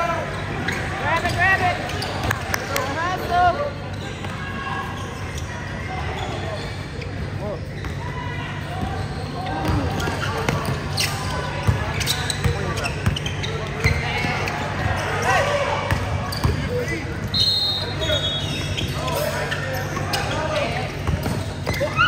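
Basketball being dribbled and bounced on a hardwood gym floor during live play, mixed with players and spectators calling out in a large, echoing gym, over a steady low hum.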